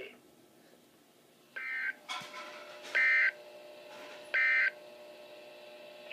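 NOAA Weather Radio's SAME end-of-message data bursts: three short two-tone warbling bursts about a second and a half apart, signalling the end of the alert broadcast.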